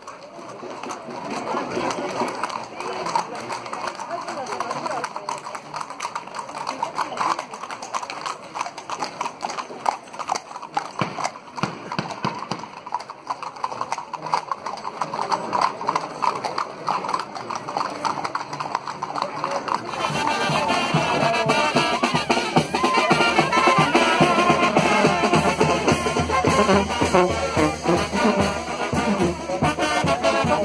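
Many horses' shod hooves clip-clopping on a paved street, with crowd voices. About two-thirds of the way through it changes abruptly to a street brass band playing loudly, with clarinet, horns and trombones.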